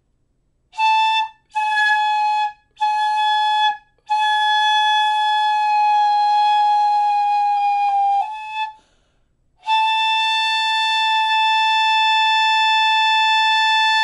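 Shinobue (Japanese bamboo transverse flute) sounding one high note: three short blows, then two long held tones of about four seconds each at a steady volume. The first long tone sags slightly in pitch near its end and slips briefly to another note. This is the exercise of keeping the tone going while holding its volume.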